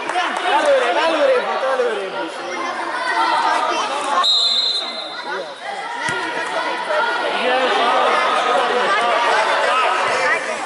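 Many voices of young players and spectators calling and chattering at once in an indoor sports hall, with one short, high, steady whistle blast about four seconds in.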